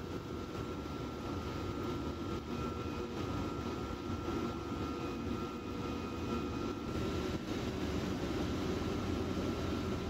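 Steady low rumble of running industrial machinery, with a thin, steady whine above it.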